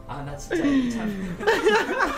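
Voices reacting: a long exclamation that falls in pitch, starting about half a second in, then chuckling laughter near the end.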